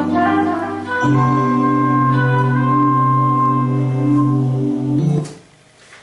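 Electric guitar played through a guitar synthesizer in a jazz fusion style: a run of quick notes, then one long sustained chord that cuts off about five seconds in.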